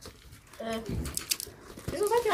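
Brief snatches of voices in a small room, with a few short rustles as a present is handled and unpacked from a gift bag.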